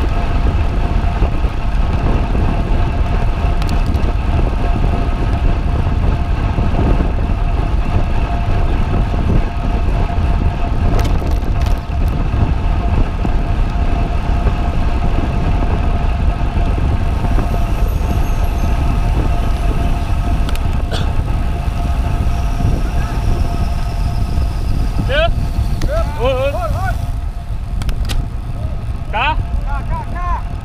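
Wind rushing over a GoPro microphone on a road bike at speed, a steady low rumble with road and tyre noise and a faint steady tone running through it. A few short high chirps come near the end.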